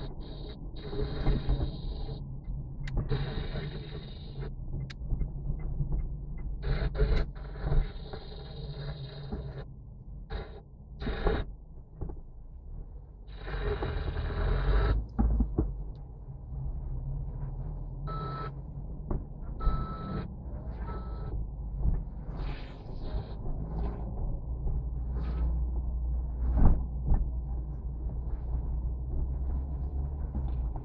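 Car cabin noise while driving slowly in city traffic: a steady low rumble of engine and tyres. Several bursts of hiss in the first half and scattered short knocks come over it.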